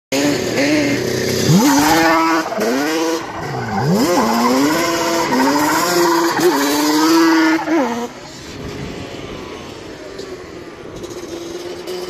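Yamaha Banshee 350 quad's twin-cylinder two-stroke engine revving hard as it drifts and spins donuts on concrete, its pitch repeatedly rising and falling with the throttle. After about eight seconds it drops to a quieter, steadier drone as the quad moves away.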